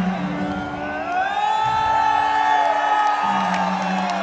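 Arena crowd cheering with long rising and falling whoops, over a steady low electronic drone from the stage.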